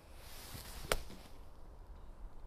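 A Vokey wedge swung into damp, compacted bunker sand: a rising swish, then one sharp strike about a second in as the club hits the sand under the ball. The lower-bounce wedge digs in and takes a deep divot.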